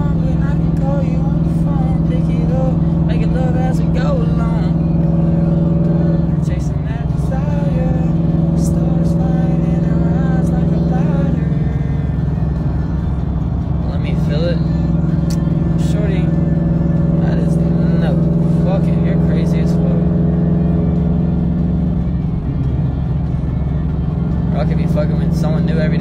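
Steady car engine and road drone inside a moving car's cabin, with music playing over it and a voice singing along.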